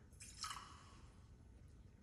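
Faint short pour of water into a chalice to rinse it, a brief trickle and splash about half a second in.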